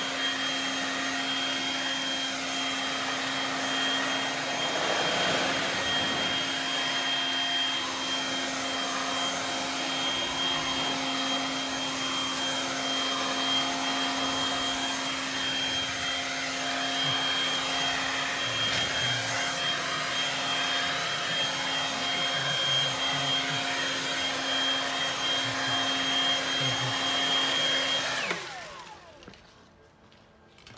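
Stihl BGA 57 battery-powered leaf blower running steadily at full speed, a rush of air with a high motor whine. About two seconds before the end it is switched off, and the whine falls quickly as the motor spins down.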